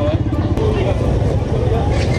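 Heavy low rumble of wind buffeting an outdoor phone microphone, with people talking faintly in the background.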